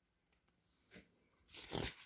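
Near silence: room tone, with a brief soft noise near the end.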